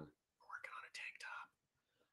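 A man whispering a few soft words for about a second.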